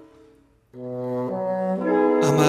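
Instrumental music from a small wind ensemble: a held chord dies away, then about two-thirds of a second in, sustained notes from French horn and woodwinds enter, the lower line stepping down in pitch and swelling near the end.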